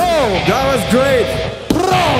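Goregrind band playing live: a pitched, effect-laden wail that warbles up and down in short arcs, about three a second, over no bass or drums, then a sharp hit near the end.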